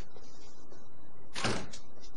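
A door shutting with a single thud about one and a half seconds in, followed by a lighter click.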